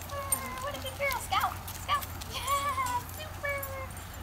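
Dogs whining: a run of drawn-out, high whines that bend gently up and down in pitch, one after another, with a few short clicks among them.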